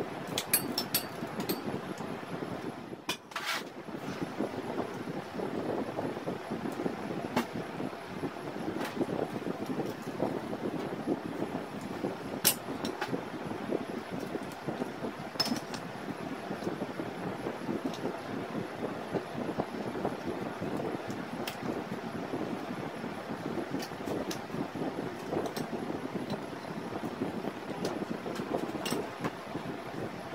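Steady mechanical background noise in a garage, broken by scattered sharp metallic clicks and clinks of hand tools working on the engine.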